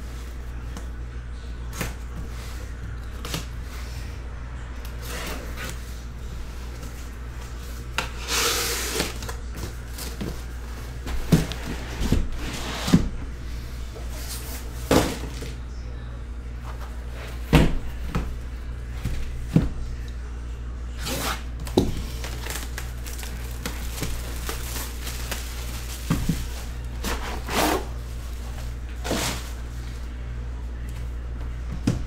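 A cardboard shipping case being opened and its boxes handled: scattered knocks and thunks with a few short scraping rustles of cardboard, over a steady low hum.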